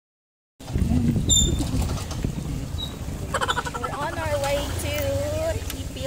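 Motorcycle engine running with a low rumble, starting after about half a second of silence. A voice is heard in the middle, over the engine.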